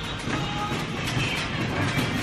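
A cart loaded with plastic storage bins rattling as it is pushed along, its wheels clattering over the floor.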